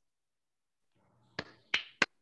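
Dead silence for over a second, then two sharp clicks about a third of a second apart.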